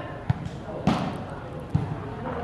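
A volleyball struck by hand three times in quick succession during a rally, sharp slaps about a third of a second in, near the middle (the loudest) and near the end, over background voices.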